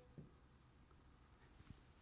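Near silence, with faint scratchy strokes of a pen hatching on an interactive display board and a couple of small ticks.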